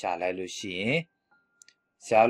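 A man's voice speaking for about the first second, then near silence with a couple of faint clicks.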